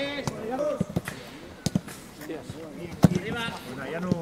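Footballs being kicked during training: a handful of sharp thuds of boot on ball, including a quick pair a little under two seconds in and another about three seconds in, with players' shouts between them.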